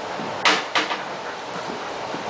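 Two knocks against a refrigerator door, a sharp loud one about half a second in and a lighter one just after.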